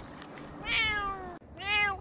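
Domestic cat meowing twice: a long meow falling in pitch that cuts off abruptly, then a shorter meow that rises and falls.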